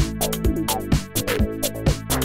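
Electronic house-style track made on analog synthesizers and drum machines: a steady kick drum about twice a second, with hi-hats ticking between the beats and short synth notes that slide down in pitch.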